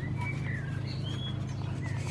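A few short bird chirps in the first second, over a steady low hum that runs throughout.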